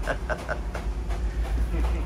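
Steady low rumble with faint voices and laughter over it in the first part.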